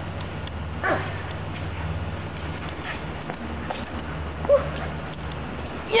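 A dog barks once, short and sharp, about four and a half seconds in, over a steady low hum.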